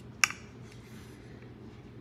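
One short, sharp clink about a fifth of a second in, a metal fork touching a ceramic plate as a chicken thigh is set down on it; otherwise quiet room tone.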